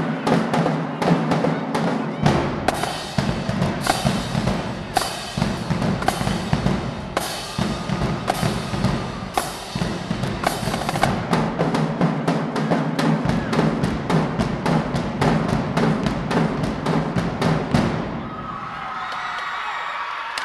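Marching drumline playing a fast cadence on snare drums and bass drums with repeated cymbal crashes. The drumming stops about two seconds before the end, leaving crowd voices.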